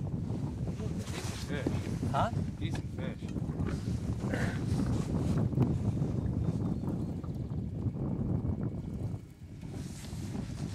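Wind buffeting the microphone, a steady low rumble, with a few faint short higher sounds over it. The rumble drops away briefly near the end.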